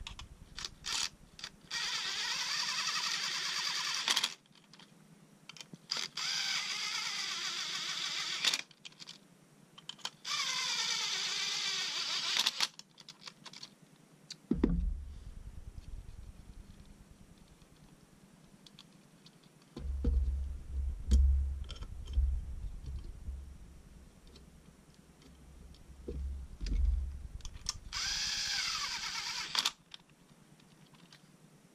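Makita cordless driver running in four short bursts as it drives brass M5 studs into a 3D-printed busbar holder, three in the first half and one near the end, its whine falling as one stud seats. Dull knocks and handling thumps on the wooden bench come in between.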